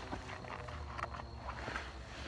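Faint rustling and scattered small clicks from the fabric of a softball bat backpack as its small pocket is handled and checked.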